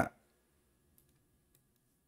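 The tail of a man's word, then faint, sparse clicks of a computer mouse against near silence.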